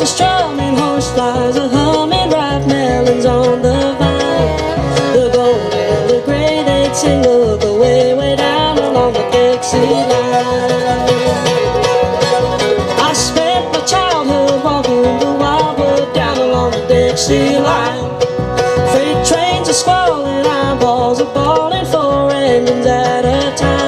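Live acoustic bluegrass band playing an upbeat instrumental passage: fiddle, acoustic guitars and upright bass over a steady, driving beat, with a wavering melody line on top.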